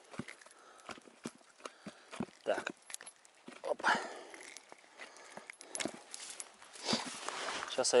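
Scattered light clicks and rustles from hands handling a freshly caught grayling close to the microphone.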